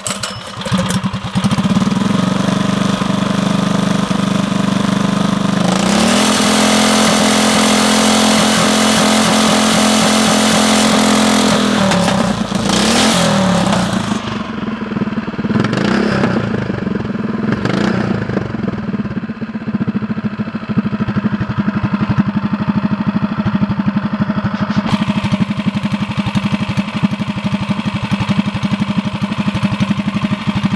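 Small 212cc clone single-cylinder engine with a new exhaust pipe, firing up right at the start. It is held at higher revs from about six to twelve seconds in, blipped a few times, then settles to a lower steady run. The fuel valve is shut, so it is running on the gas left in the carburetor bowl.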